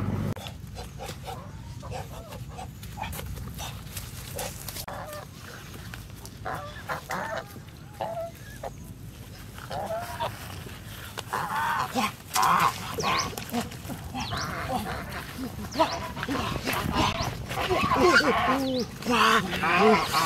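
Domestic geese calling: a few scattered honks at first, then frequent, louder honking through the second half.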